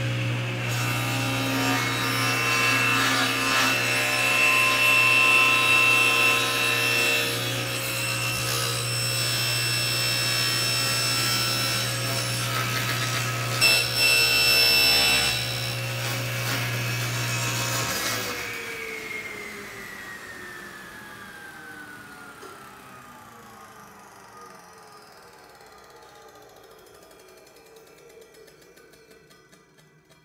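Table saw running while its spinning blade is raised up through the base of a crosscut sled, cutting a slot through it. About 18 seconds in the saw is switched off, and the blade winds down with a falling whine that fades away.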